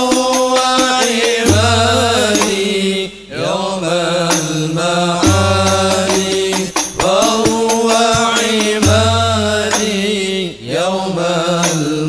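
A sholawat sung in Arabic in the banjari style, with voices holding long melodic phrases over frame-drum accompaniment. The phrases break briefly about every three to four seconds.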